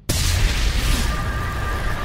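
A cinematic boom from a logo sting: a sudden deep impact right at the start, followed by a sustained rushing noise over a low rumble.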